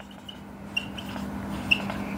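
Dry-erase marker squeaking and scratching on a whiteboard in short strokes as letters are written, the loudest squeak near the end, over a faint steady hum.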